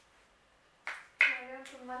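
Near quiet, then a short sharp click just under a second in, followed by a woman speaking near the end.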